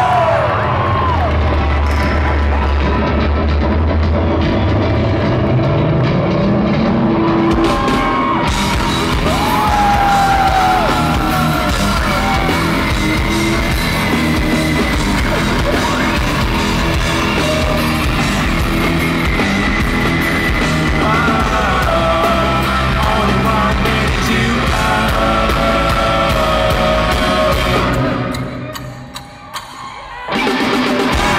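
Rock band playing live at full volume, with electric guitars, bass and drums. A slide rises in the low end a few seconds in, and the music drops away sharply near the end.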